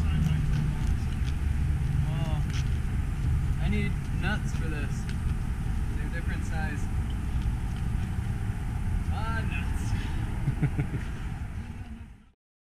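Outdoor background sound: a steady low rumble with a few faint, brief voice-like sounds, fading out at the very end.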